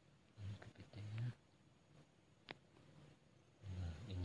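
Short low-pitched vocal sounds: two in the first second and a half and another starting just before the end, with a single sharp click about two and a half seconds in.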